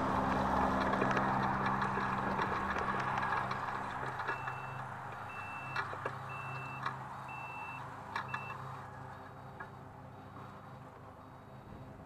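Background music fading out, then an S12X Vita Monster mobility scooter's reverse beeper sounding about five short, high beeps, roughly one a second, as the scooter backs and turns.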